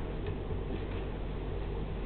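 Steady low hum and hiss of room background noise, with no distinct event standing out.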